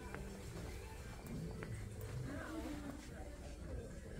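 Indoor store ambience: faint background music and distant voices of other shoppers, with a few light clicks.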